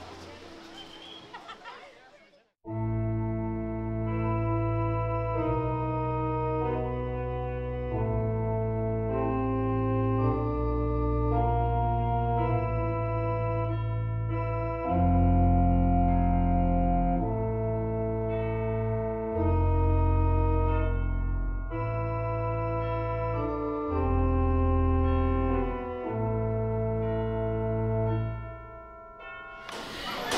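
Slow organ music in long held chords, entering suddenly about three seconds in after a brief gap. It swells louder several times through the middle.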